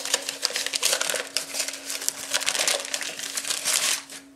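Paper wrapping crinkling and rustling as a mug is pulled out of it, a dense run of crackles that stops suddenly near the end.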